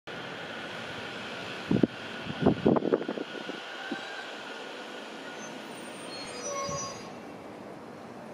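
JR Sobu Line local electric commuter train pulling into the platform and braking to a stop. Its running noise is steady, with several loud knocks about two to three seconds in, and brief high squealing tones near the end as it comes to a halt.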